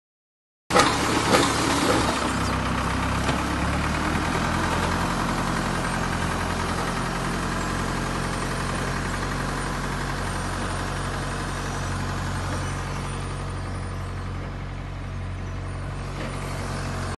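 Tractor engine running steadily while it pulls a three-row plastic-mulch bed shaper, with a few loud clanks from the implement just after the sound starts abruptly in the first second.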